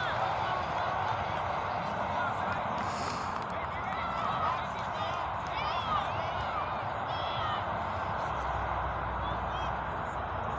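Youth soccer players and sideline spectators calling out at a distance, short shouts over a steady outdoor murmur. A low rumble comes in near the end.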